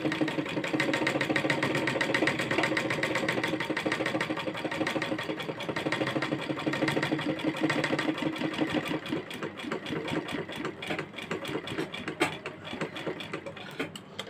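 Domestic straight-stitch sewing machine running, the needle stitching steadily through layered blouse fabric to put in the permanent seam of a patch. About nine seconds in, the stitching breaks into short, uneven runs with a few sharp clicks as the fabric is turned.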